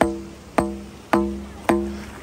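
Rubber mallet striking the top of a PVC pipe sand spike, driving it into the sand: four steady blows about half a second apart, each a knock followed by a short hollow ring from the pipe.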